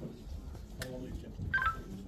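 A sharp click just under a second in, then a quick run of short electronic beeps at a few different pitches about a second and a half in, over a low murmur of voices.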